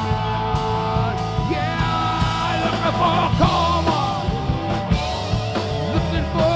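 Live rock band playing an instrumental passage: lead electric guitar holding notes and bending them upward, over electric bass and a drum kit.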